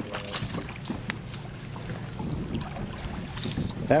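Choppy lake water lapping and splashing against the side of a boat as a hooked largemouth bass is drawn in at the surface, with a few brief splashes.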